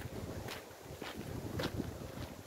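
Footsteps on a paved path, two steps about a second apart, over a low rumble of wind on the microphone.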